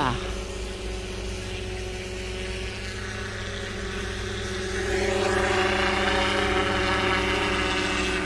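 Unmanned crop-spraying helicopter flying over rice paddies while spraying pesticide: a steady rotor hum made of several even tones. It grows louder about five seconds in as the aircraft comes nearer.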